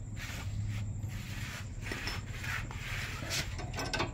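A combination wrench working the nut of a Honda Mobilio's front stabiliser link as the loose link is tightened: soft scraping and handling noise with a few light metallic clicks near the end, over a steady low hum.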